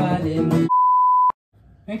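Acoustic guitar strumming with a man singing is cut off abruptly by a steady electronic beep tone lasting about half a second, like a censor bleep. A short silence follows.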